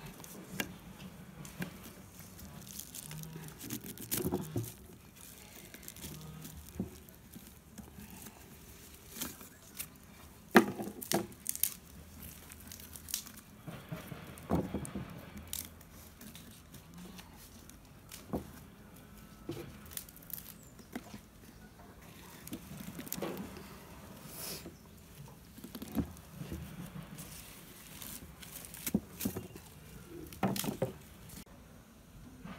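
Strips of leaf packing being pulled out of the neck of a glazed earthenware pickling jar: scattered rustling, tearing and scraping against the ceramic, with small knocks and one sharp knock about ten seconds in.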